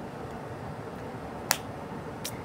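A single sharp finger snap about one and a half seconds in, over steady low background noise.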